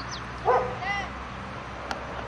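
Short yelping animal calls: the loudest about half a second in, a second shorter one just before one second in.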